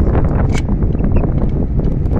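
Wind buffeting the microphone: a steady, heavy low rumble, with a few faint sharp clicks over it.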